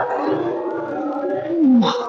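A man sighing, then groaning with a voice that falls in pitch near the end, over background music.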